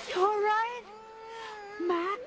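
A young girl crying in high, wavering wails: one drawn-out sobbing cry about a second long, then another starting near the end.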